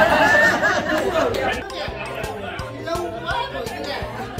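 Several people chatting at once around restaurant tables, loudest in the first second and a half, then background music with a steady beat under quieter voices.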